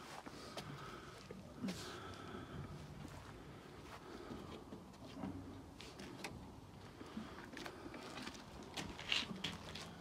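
Faint rustling and scattered soft clicks of footsteps and handling, with a few sharper clicks about nine seconds in.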